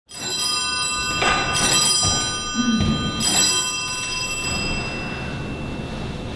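Bells struck a few times in the first three seconds, their clear high notes ringing on and slowly fading away.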